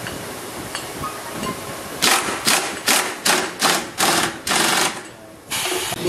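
Handheld impact wrench driving a fastener on a motorcycle front shock assembly in short trigger bursts, about seven quick rattling bursts roughly three a second, then a short pause and one more burst near the end. Steady workshop background underneath.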